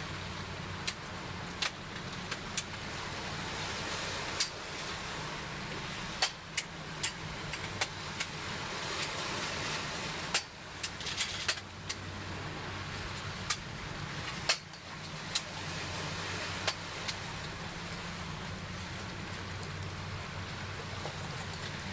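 Steady low machinery hum under a noisy haze, broken by scattered sharp clicks, most of them in the middle.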